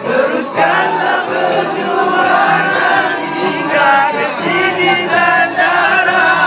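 A group of young men singing a Malay song together, several voices at once.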